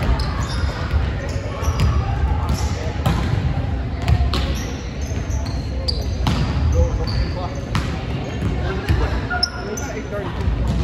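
Volleyballs being hit and bouncing on a hardwood gym floor during a spiking drill: irregular sharp slaps and thuds, about one every second or two, echoing in the large gym. Short high squeaks of sneakers on the court are mixed in.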